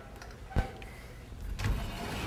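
A single sharp knock about half a second in, then a scratchy rubbing sound that starts near the end.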